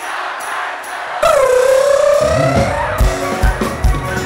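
Live folk-rock band coming in over a cheering crowd: about a second in, a loud long held note enters, dipping and then slowly rising in pitch, and a second later the drum kit starts a steady beat under the band.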